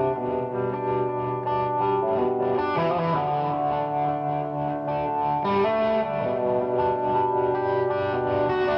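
Overdriven Gibson Les Paul electric guitar played live, with long sustained notes and chords that shift to new pitches about three seconds and again about five and a half seconds in.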